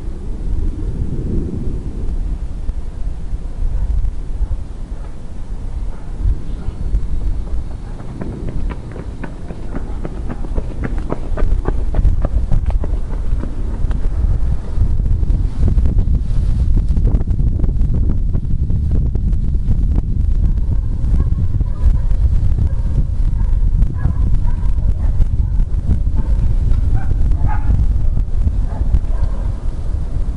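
Wind buffeting the microphone, a steady low rumble, with leaves rustling close by.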